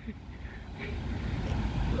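Road traffic: a car going by on the road, a low rumble that grows louder.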